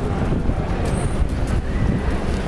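Wind rumbling on the microphone over steady outdoor street background noise, with a few faint taps between about one and one and a half seconds in.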